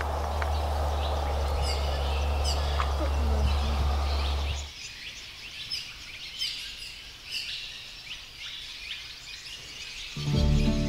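Small birds chirping repeatedly in short, high calls. Under them, a steady low rumble cuts off suddenly about halfway through, leaving only the chirps.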